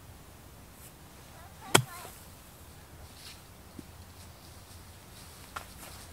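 One sharp strike of a golf iron hitting the ball off dormant turf, about two seconds in. The shot is struck fat, catching the ground first, and comes up short.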